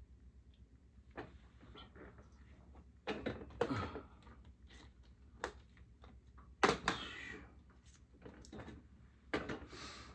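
Scattered knocks, clunks and brief rustling of objects being handled at close range, the loudest a few seconds in, again past the middle, and near the end.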